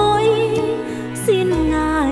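A woman sings a slow Vietnamese Catholic Lenten hymn over a soft instrumental accompaniment with a low bass. She holds one long note, then about halfway through she moves down to a lower one.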